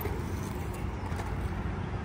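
Skateboard wheels rolling on concrete: a steady rumble.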